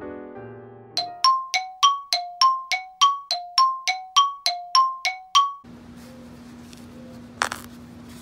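A bright two-note chime, alternating high and low, about sixteen ringing strikes at roughly three a second, that stops sharply. Before it the last of soft piano music fades out; after it there is room tone with a steady low hum and a single click.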